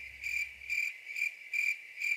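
Cricket chirping sound effect, a high steady trill pulsing about three times a second, edited in as the stock 'crickets' gag for an awkward silence.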